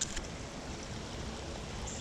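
Steady hiss of a flowing creek, with a brief click right at the start.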